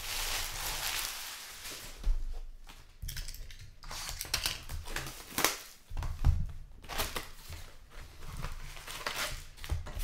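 Foil trading-card pack wrappers crinkling as they are swept aside, then a cardboard box of card packs being handled and emptied, with several sharp knocks and taps.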